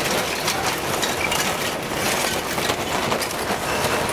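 Large lumps of holm oak charcoal clattering as they are poured out of a paper bag onto the grill's bed of ash: a dense run of clicks and knocks from the hard pieces tumbling together.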